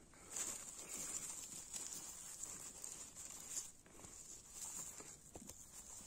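Faint rustling and crackling of dry leaves, pine needles and twigs on the forest floor as someone moves in close and handles the litter around a mushroom. It is busiest in the first few seconds, then thins to scattered small crackles.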